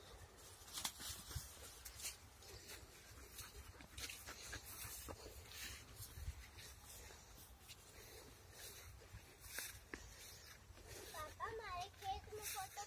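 Faint, scattered crunching and rustling of footsteps on a dry grassy dirt path over a low steady rumble. Near the end a high, wavering voice starts.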